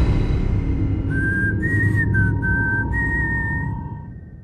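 A slow, eerie whistled tune of a few held notes, stepping between two pitches, over a low rumbling drone. It fades away near the end.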